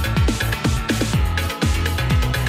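Flash house electronic dance music played from a DJ's turntable mix, driven by a steady, fast kick-drum beat.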